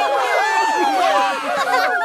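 Several cartoon character voices cheering and whooping together, many overlapping calls rising and falling in pitch.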